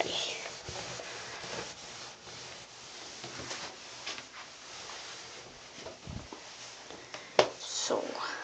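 A cloth towel rubbing and wiping across a bathroom counter, with one sharp knock about seven seconds in.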